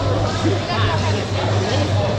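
Babble of many people talking at once in a large, busy hall, over a steady low hum.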